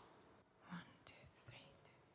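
Near silence with faint whispering close to a microphone: a few soft breathy, hissing syllables.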